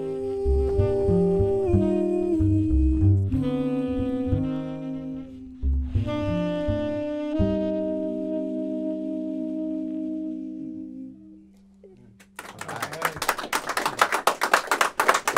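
Tenor saxophone and plucked double bass play the closing bars of a slow jazz ballad, settling on a long held final note that fades away about eleven seconds in. After a short hush, clapping starts near the end.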